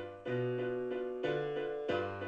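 Software piano (a VST instrument's piano program) playing back a MIDI piano part: sustained right-hand chords over a bass line, with new chords struck about a quarter second in, just past the middle and again near the end. The right-hand chords have just been tightened toward the beat with a 40% iterative quantize.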